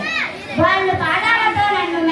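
Speech: a schoolgirl reciting a Hindi poem aloud into a microphone, with other children's voices around her.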